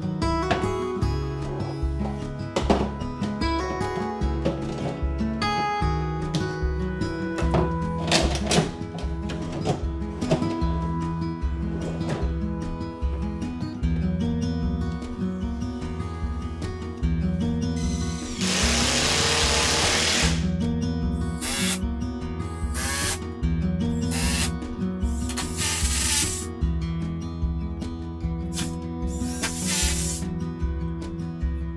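Background acoustic guitar music throughout. In the second half a power drill runs in several bursts, the first and longest about two seconds, then shorter ones.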